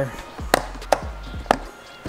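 Three sharp plastic clicks in quick succession as the black blow-moulded case of a slide-hammer puller kit is handled and unlatched.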